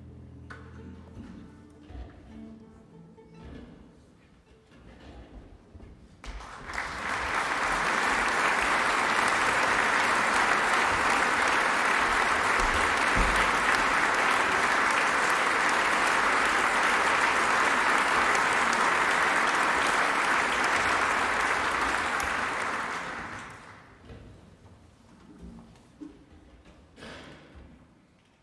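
Audience applauding steadily in a concert hall. The applause swells in about six seconds in, holds for some seventeen seconds and dies away a few seconds before the end.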